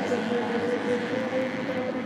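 Motocross bikes' 250cc four-stroke engines running hard at high revs, giving a steady, high engine note.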